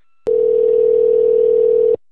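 A click, then a steady telephone dial tone for about a second and a half that cuts off suddenly. The call has just ended and the line has gone back to dial tone.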